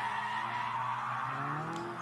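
Die-cast toy cars rolling down a plastic gravity race track toward the finish line, a steady rolling whir from their wheels on the track.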